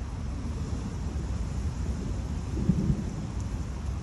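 Distant thunder: a low rumble that swells briefly a little past the middle, over a steady low background rumble.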